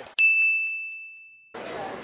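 A single bright bell-like ding, an edited-in sound effect, struck once and ringing out on one clear tone. It fades away over about a second and a half. Near the end, after a cut, the faint steady noise of a large hall takes over.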